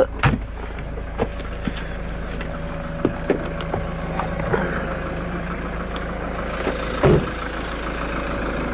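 Toyota Land Cruiser's 3.0-litre D-4D four-cylinder turbodiesel idling steadily. A few light clicks come as the glove box is pushed shut, and a heavier thump about seven seconds in comes as the driver's door is shut.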